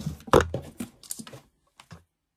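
A sharp knock as the boxed UV lamp is fumbled, followed by a few lighter handling clicks and rattles, then near silence for the last half second.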